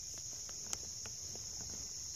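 Steady high-pitched chorus of woodland insects in the trees, with a few faint ticks and a light crunch of footsteps in dry leaf litter, one sharper tick about a third of the way in.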